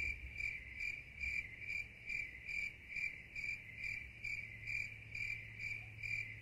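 Crickets chirping as an inserted sound effect: one steady, regular chirp a little over twice a second.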